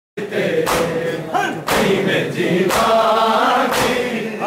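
Men's voices chanting a Punjabi noha (mourning lament) together, with loud hand strikes on bare chests (matam) landing in time about once a second.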